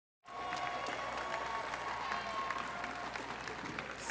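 A large crowd applauding, many hands clapping steadily. It begins just after the start.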